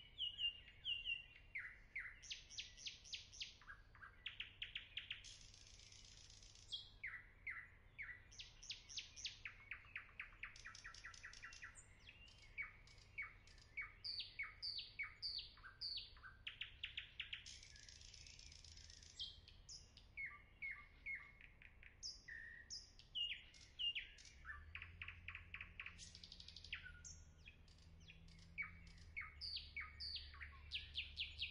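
A small songbird chirping and trilling: quick runs of short, sharp, falling high notes, with a couple of brief buzzy phrases, heard faintly.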